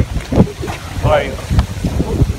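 Wind buffeting the camera's microphone in irregular low gusts. A short voice sounds about a second in.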